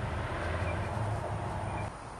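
A steady low mechanical hum with a broad rushing noise over it, easing off slightly near the end.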